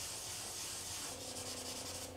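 Drawing stick rubbing and scratching across a large sheet of paper as lines are sketched, with a run of quick strokes in the second half.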